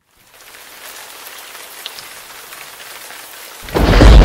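Rain falling, fading in as a steady hiss, then a loud clap of thunder breaking in near the end.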